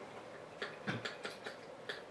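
A handful of light clicks and taps, about six in a second and a half, as small objects are handled off to the side of the bench.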